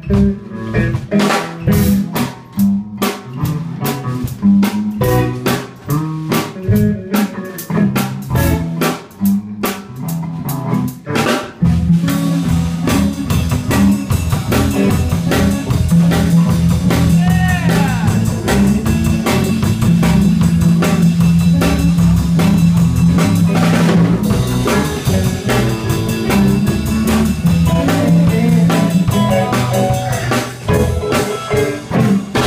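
Live blues band playing electric guitar and drum kit. For about the first twelve seconds the playing is stop-start, with separate hits and notes and short gaps; then the band settles into a fuller, steady groove.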